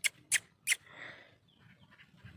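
Three quick, sharp mouth clicks in a row, a person calling a puppy's attention, followed by a short breathy hiss.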